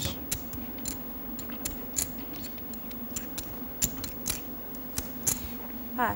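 Poker chips and cards being handled at the table: irregular light clicks and clacks, with a low steady hum underneath.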